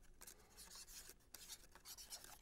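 Faint scratching of a marker pen writing on a balsa-wood model-plane wing, in short irregular strokes.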